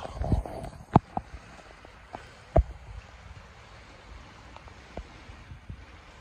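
Shallow river water rushing steadily over a rocky bed, with a few sharp knocks about one and two and a half seconds in.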